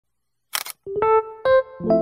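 A camera shutter click sound effect about half a second in, followed by a few single electric-piano notes that lead into a held chord as intro music begins.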